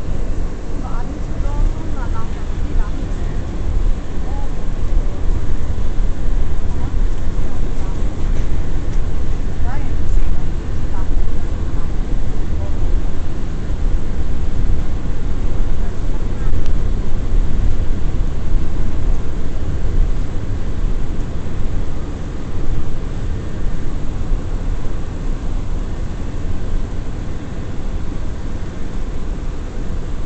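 Inside an R179 subway car in motion between stations: a loud, steady rumble of wheels on rails and running gear, with faint brief squeals now and then.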